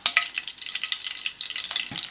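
Mustard and fenugreek seeds sizzling in hot oil in a pan, with a steady patter of small crackles and pops and a louder crackle just before the end.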